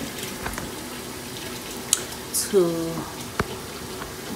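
Kitchen tap running steadily into a sink, with two sharp clicks in the second half.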